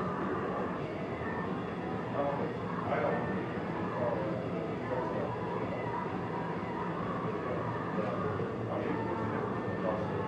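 A steady low hum with indistinct voices murmuring now and then.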